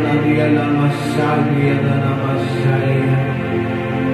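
Slow, sustained chords on a Yamaha electric keyboard, with a man's wordless chanting voice held over them.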